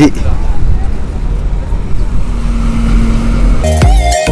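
Road traffic on a city bridge: a steady low rumble of passing vehicles, with a low engine hum joining about halfway through. Music with a beat cuts in just before the end.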